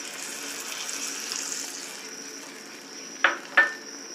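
Tamarind water poured into a hot clay pot of fried garlic and masala, sizzling and hissing, the hiss fading after the first couple of seconds. Near the end a steel spoon knocks twice against the pot.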